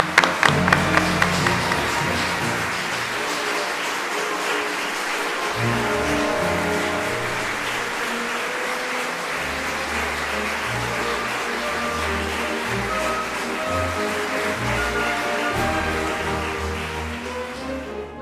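A large audience applauding steadily, with instrumental music playing underneath.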